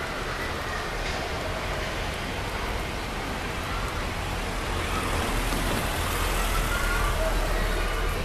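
Street traffic noise, a steady hum of road vehicles that grows louder over the last few seconds, with faint voices.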